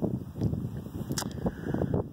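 Gusty wind rumbling on the microphone, with a few brief clicks, the sharpest a little past the middle.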